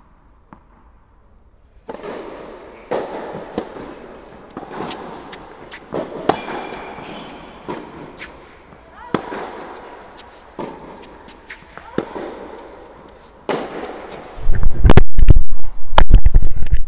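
Tennis ball struck by rackets and bouncing during a rally on an indoor court: sharp pops about every second or so, echoing in the hall. Near the end a loud low rumble of the microphone being handled or buffeted drowns everything out.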